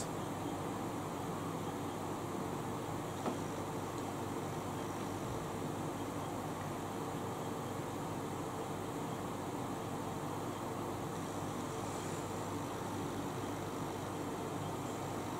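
Steady hiss of an electric fan running, with a faint steady hum under it.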